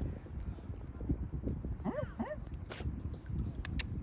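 Choppy, low sloshing and dabbling of a mute swan feeding at the surface right by the microphone. About halfway through come two short squeaky calls that rise and then fall, and a few sharp clicks follow near the end.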